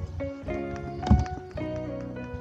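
Instrumental background music: sustained chords whose notes change about every half second. A short, loud thump comes about a second in.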